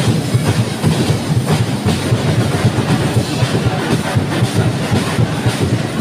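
Loud percussion music with a fast, driving drumbeat.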